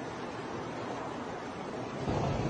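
Steady rushing background noise with no distinct voices or sudden events.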